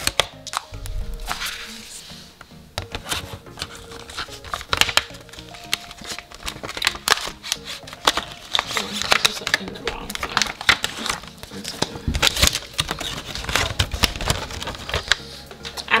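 Stiff clear plastic packaging crinkling and clicking as hands handle it, in many short crackles, with faint background music.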